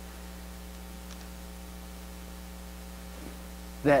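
Steady electrical mains hum, a low buzz with evenly spaced overtones, holding even throughout; a man's voice comes in near the end.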